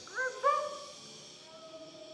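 A performer's wordless vocal cries: two short arching yelps in the first half second, the second one louder, then a long held note.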